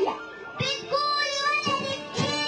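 A young girl singing into a microphone with music behind her, holding long notes.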